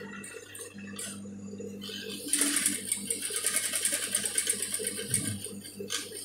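Industrial flatbed sewing machine: a low steady hum for about two seconds, then the needle stitching in a fast, even run through cotton fabric until near the end.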